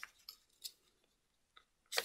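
A strip of paper being folded and creased by hand: a few faint, short crinkles and taps.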